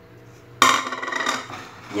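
Kitchenware clattering: a sudden sharp clink about half a second in, followed by about a second of rattling and scraping of dishes and a metal spoon against a bowl.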